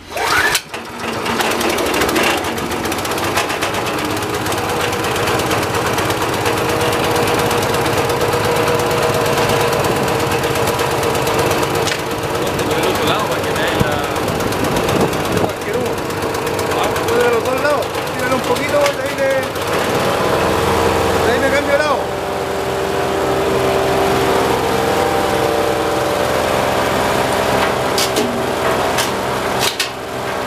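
Wood chipper's 196 cc, 6.5 hp four-stroke single-cylinder petrol engine starting up within the first second, then running steadily with the chipper empty. About two-thirds of the way through, the engine's note changes.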